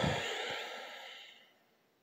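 A man's breathy exhale, a sigh through the nose, fading out over about a second and a half.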